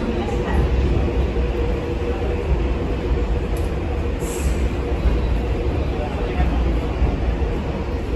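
Underground railway station platform: a steady low rumble and hum of a train in the subway tunnel, with a brief high hiss about four seconds in and people talking.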